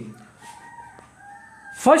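A faint, drawn-out animal call in the background, lasting about a second and a half.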